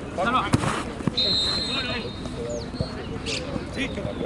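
Football players shouting during play, with a sharp thud of a ball being kicked about half a second in. A high, steady whistle tone sounds for about a second, starting just after the first second.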